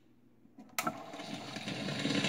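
Stylus dropping onto a spinning 1944 Exner shellac 78 rpm record: a sharp click about three quarters of a second in, then surface noise and crackle from the groove, rising in level as the music starts.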